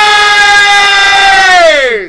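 A man's long, loud celebratory scream, held on one high pitch and then falling away near the end.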